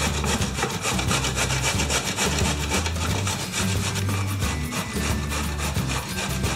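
A peeled zucchini being grated on the coarse side of a stainless steel box grater: a steady run of repeated rasping strokes as the flesh is pushed over the blades.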